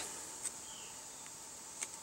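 Quiet woodland background: a steady high insect hum, with two faint short ticks, one about half a second in and one near the end.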